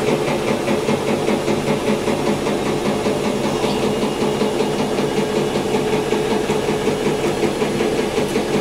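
A steady mechanical hum with a hiss, unchanging throughout.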